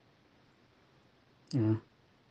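One short syllable from a low voice about one and a half seconds in, lasting under half a second, over a faint background hiss.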